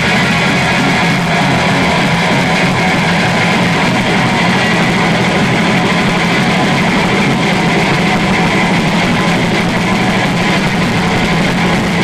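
A noise-punk band playing live, loud and unbroken: two electric guitars strummed hard over bass and drums, making a dense wall of sound.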